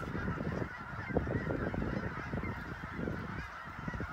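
A flock of geese honking, many calls overlapping in a steady chorus.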